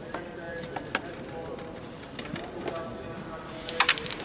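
Carrom break shot: the striker is flicked into the central pack of coins near the end, giving a quick cluster of sharp clacks as the coins scatter. A single click about a second in, over a background murmur of voices.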